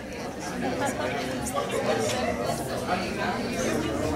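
Many people chatting at once in a room, overlapping voices with no single speaker standing out; the chatter grows louder over the first second or so.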